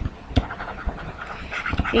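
A few sharp taps of a stylus on a tablet screen while writing, over breathing close to the microphone.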